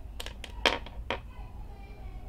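Small loose parts, a metal screw, a steel hose clamp and a plastic pin, set down on a tabletop: a handful of light clicks and clatters within the first second or so.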